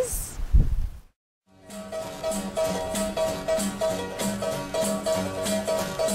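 About a second of outdoor background sound, then a short gap of silence, then background music with a steady rhythm of repeated notes.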